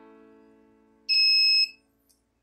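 Piezo buzzer giving one steady high beep of about half a second, a little over a second in: a keypad beep from the Arduino coin device as a key is pressed.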